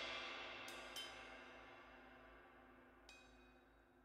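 Cymbal ringing out and fading away after the final hit of a drum performance. There are a few faint ticks about a second in and again about three seconds in.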